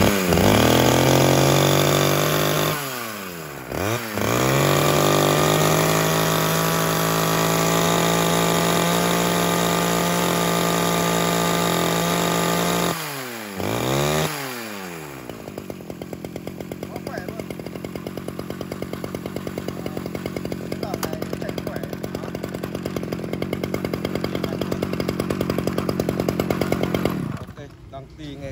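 Stihl 011 AV two-stroke chainsaw on a test run: held at high revs, dropping briefly twice in the first half, then idling with an even putter for about twelve seconds before it is shut off near the end. It runs strongly and cleanly, the sign of an engine in good order.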